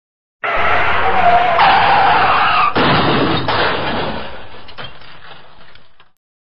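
A loud, noisy sound effect that starts abruptly, with a squealing tone in its first couple of seconds and sharp knocks a little under three and about three and a half seconds in, then fades away and cuts off at the end.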